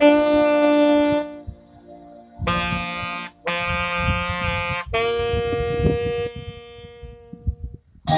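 Saxophone playing slow, sustained notes: four long notes with short breaks between them, the last held for about a second and a half and then fading away near the end.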